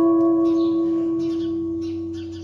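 White Stratocaster-style electric guitar: one chord struck and left ringing, its steady tones slowly fading away.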